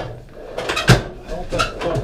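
Rummaging through workshop drawers while searching for a sheet of paper, with a sharp knock about halfway through.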